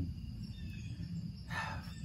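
Faint outdoor background with a low steady rumble, in a pause between spoken phrases.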